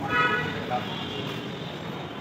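A short, steady horn-like toot about a tenth of a second in, lasting under half a second, over a constant background of room noise and murmur.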